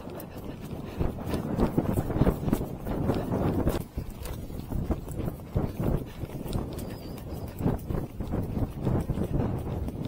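Hoofbeats of an Arabian horse moving at pace over a grassy track, a quick irregular run of strikes over a steady low rumble of wind on the microphone.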